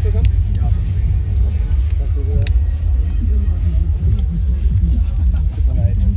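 A steady deep rumble throughout, with faint voices underneath.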